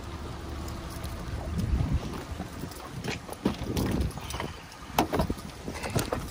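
Wind buffeting a handheld phone's microphone, with low handling rumble and a few sharp clicks and knocks, the loudest about five seconds in.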